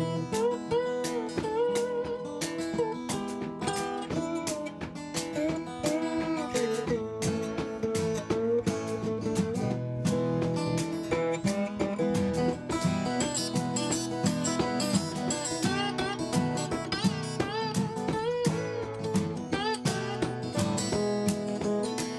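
Acoustic guitar playing an instrumental break in a blues song, with strummed chords under a lead line of bending notes.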